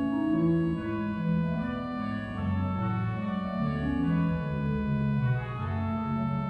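Pipe organ playing a quick-moving passage, with held chords full of upper overtones over bass and middle notes that change about every half second.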